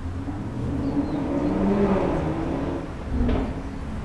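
A motor vehicle's engine running nearby, a low rumble that swells over the first two seconds and then eases off, with a brief louder sound about three seconds in.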